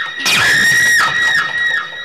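A long, shrill, high-pitched scream held on one steady pitch for about a second and a half, starting just after an earlier scream breaks off.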